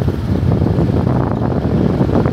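Wind buffeting the microphone on a moving motorcycle: a loud, steady low rumble, with the motorcycle's running noise mixed in.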